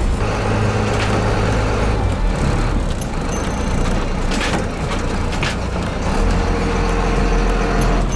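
Converted school bus engine running at low speed, heard from inside the cab as the bus pulls into a gas station, its hum shifting in pitch as the speed changes. Two brief hissing sounds come about four and a half and five and a half seconds in.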